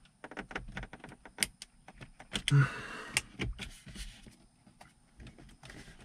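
Plastic dashboard trim on a 2020 Subaru Forester being pried with a plastic pry tool, making a run of small clicks and creaks as the panel's retaining clips strain. There is a brief scraping rustle about two and a half seconds in.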